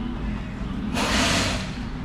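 A man's quick, audible breath drawn in about a second in, over a steady low hum.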